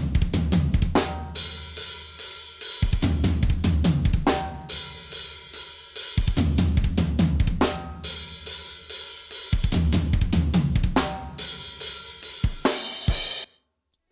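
Soloed acoustic drum kit recording with no samples, played back from a multitrack mix: kick, snare, hi-hat and cymbals in a continuous groove, sounding raw. The playback cuts off suddenly near the end.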